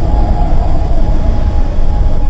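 Soundtrack drone: a loud, steady low rumble with a faint held tone above it.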